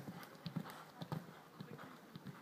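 Hoofbeats of a cross-country horse galloping on a dirt track, a quick uneven run of thuds that grows fainter as the horse moves away.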